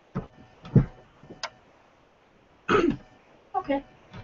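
A person clearing their throat and coughing in a few short bursts, with a sharp click about a second and a half in and a couple of brief voiced sounds near the end.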